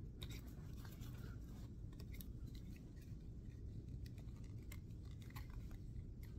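Faint handling noise: scattered small clicks and scrapes of a GoPro action camera and its magnetic neck mount being slid and fitted into place at a jacket collar.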